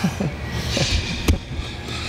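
Two men grappling on a training mat: bodies shifting and bumping against the mat, with short breathy vocal sounds from the effort, and a sharp knock a little past halfway.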